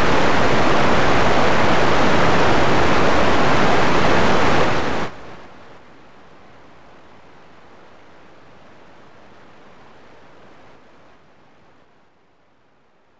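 Loud static hiss from an unrecorded stretch of videotape playing back as snow. About five seconds in it drops suddenly to a faint steady hiss, which steps down again near the end.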